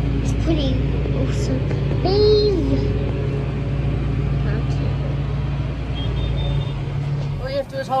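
Tractor engine running steadily, heard from inside the cab, with a short child's call about two seconds in. The engine hum drops away near the end.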